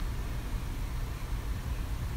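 Steady low rumble with a faint hiss in a car's cabin: the car's background noise while it stands still.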